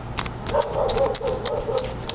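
A deck of cards being shuffled by hand: a run of light, sharp card clicks. From about half a second in until near the end, a wavering, whine-like tone sounds over them and is the loudest sound.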